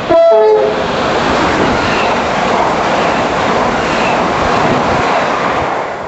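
Electric multiple-unit train horn sounding a quick high-then-low tone sequence, lasting about half a second. The train then runs past at speed with a loud, steady rush of wheels on rail.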